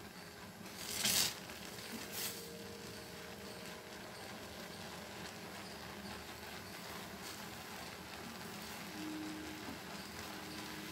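Thick cornflour custard cooking in a pan over a high gas flame while a wooden spatula stirs it: a faint, steady cooking sizzle with soft scrapes of the spatula, the loudest about a second in and another about two seconds in.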